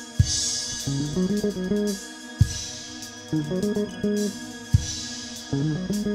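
Instrumental introduction of a worship song played by a band on bass guitar, acoustic guitar, keyboard and drum kit. Sustained bass notes and chords run under a drum hit about every two seconds, each followed by a ringing cymbal.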